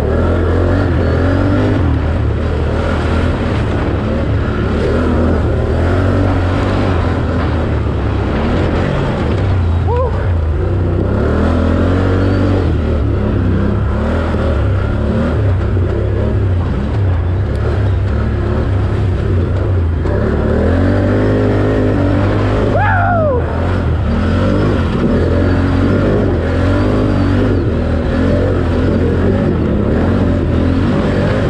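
4x4 ATV engine running hard on a rough dirt trail, its revs rising and falling with the throttle, over a steady low drone. Twice, about ten seconds in and again past the two-thirds mark, a short high tone slides in pitch above it.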